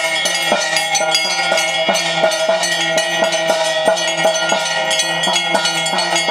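Ritual bells ringing during temple worship. A fast, steady beat of metallic strikes, about three to four a second, runs over sustained ringing tones.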